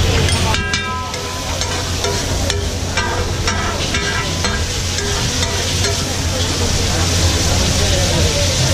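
Flat metal spatula scraping and clacking on a large pav bhaji griddle as the bhaji is stirred and spread, with sizzling from the hot griddle. The scrapes come as repeated short clicks throughout.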